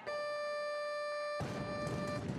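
Weightlifting down signal: a steady electronic beep that sounds once the lifter holds the bar still overhead, telling her she may lower it. About one and a half seconds in, crowd noise comes in suddenly under the tone.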